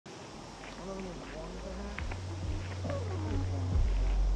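A person's wordless voice sliding up and down in pitch, growing louder, over a steady low hum that comes in about halfway through.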